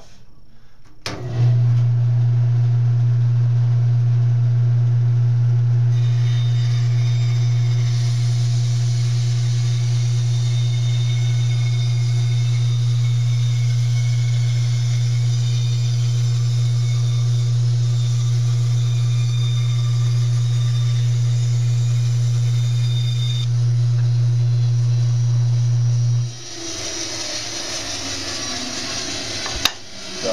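Bandsaw switched on about a second in, its motor running with a loud, steady hum. From about six seconds to about twenty-three seconds the blade cuts a curve through a board, adding a hiss over the hum. The motor hum cuts off suddenly near the end when the saw is switched off, and the blade and wheels keep running down.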